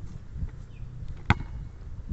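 A basketball bouncing once on asphalt: a single sharp slap about a second in.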